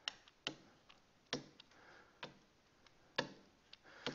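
Faint, sharp taps of a stylus on a tablet screen while numbers are handwritten, about five irregular clicks roughly a second apart.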